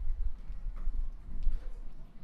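Footsteps and irregular thuds on a wooden stage floor, the loudest about a second and a half in.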